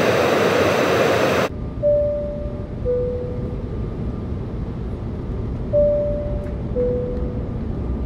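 Steady jet airliner noise cuts off suddenly about a second and a half in, leaving a low cabin rumble. Over the rumble an airliner cabin chime plays two falling tones, high then low, and repeats a few seconds later. It goes with the no-smoking and seat-belt signs lighting up.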